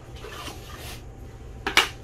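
Cardboard packaging being handled with a light rustle, then two sharp knocks close together near the end as box parts are set down on a glass tabletop.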